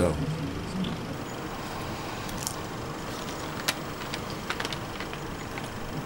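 Steady low background noise, like room tone, with a few faint short clicks scattered through the middle.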